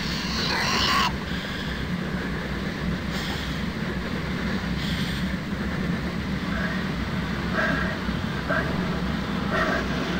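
Film soundtrack of a spacecraft interior: a steady low machinery hum, with short hisses in the first half and brief, higher-pitched sounds in the second half.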